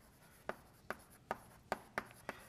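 Chalk writing on a blackboard: a run of short, sharp taps about two or three times a second, with faint scraping between them.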